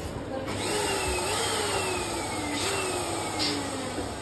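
Small electric balloon pump running, its motor whine slowly sagging in pitch as the balloon fills and jumping back up twice.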